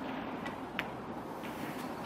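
One sharp click of a snooker shot, struck and potting a red, about a second in, over a quiet arena hush.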